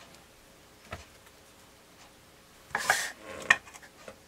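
A butter knife clinking and scraping against a ceramic butter dish: a quick cluster of sharp clinks about three seconds in, after a single soft knock about a second in.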